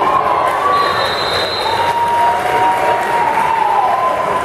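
Football crowd in the stands cheering and yelling during a play, with long drawn-out shouts, one trailing down near the end.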